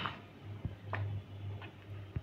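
Wooden spatula stirring thick, wet sago khichdi in a metal pan: a few scattered soft clicks and scrapes against the pan, over a low steady hum.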